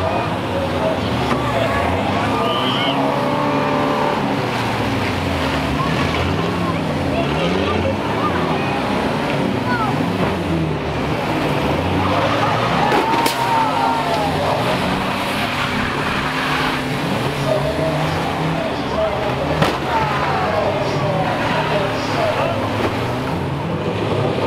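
Several banger-racing van engines revving and running hard together around the oval, their pitches rising and falling and overlapping. A sharp knock about 13 seconds in and another near 20 seconds stand out.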